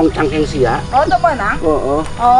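A person's voice speaking loudly and animatedly, its pitch sliding sharply up and down.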